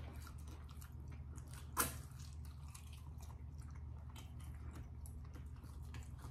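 Faint close-up chewing and mouth sounds of people eating, over a steady low room hum, with one sharper click about two seconds in.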